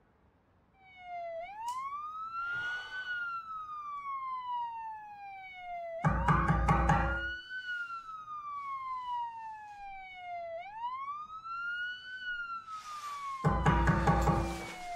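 Emergency-vehicle siren on a wail cycle: the pitch climbs quickly, then sinks slowly, repeating about every four and a half seconds. Two loud, low booming hits cut across it, about halfway through and near the end.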